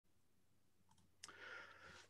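Near silence broken by a single faint click a little over a second in, followed by faint room sound.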